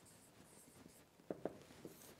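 Marker pen writing on a whiteboard, faint, with two short sharp strokes about one and a half seconds in.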